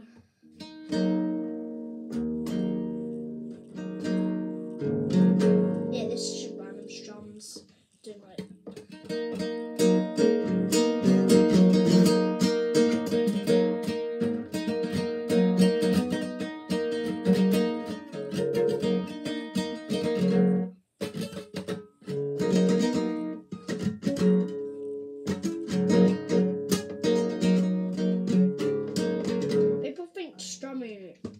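Nylon-string classical guitar strummed in chords, with ringing chords over the first few seconds, a short break about eight seconds in, then busier rhythmic strumming that stops briefly around twenty-one seconds before carrying on.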